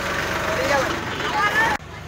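Voices talking over a steady low machine hum; the sound drops sharply about three-quarters of the way through, leaving the hum more quietly.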